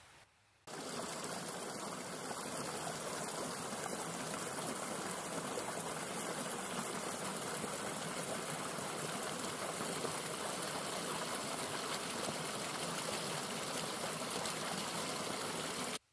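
A small woodland stream running over rocks in a short cascade: a steady rush of water that cuts in suddenly just under a second in.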